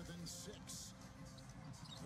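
Faint NBA television broadcast audio: a commentator talking over arena crowd noise, with a basketball being dribbled on the hardwood court.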